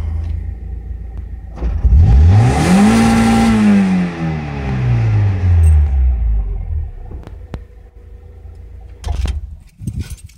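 Mazda Miata's inline-four engine, run by a Speeduino aftermarket ECU, idling and then revved once, heard from inside the cabin: a couple of seconds in the pitch climbs, holds briefly at the top and falls back to idle over about four seconds. A few knocks near the end.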